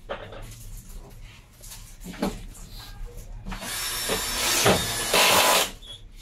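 A power tool runs in two loud, harsh bursts, the first starting about three and a half seconds in and the second cutting off shortly before the end, with a brief break between them. Light knocks and clatter come before it.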